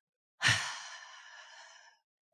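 A woman's long, breathy sigh, starting about half a second in and fading away gradually.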